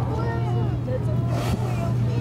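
A boat's engine runs with a steady low hum under the chatter of several people's voices, with a brief rush of noise about one and a half seconds in.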